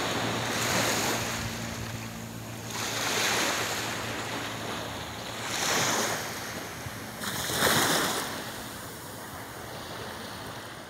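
Small ocean waves washing onto the beach, the surge rising and falling about every two to three seconds, four times over.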